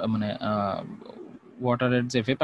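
Speech: a lecturer's voice holds a drawn-out vocal sound for just under a second, pauses briefly, then resumes talking near the end.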